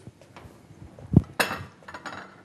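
A dull knock about a second in, followed at once by a short clatter: serving plates being taken and set down on the counter.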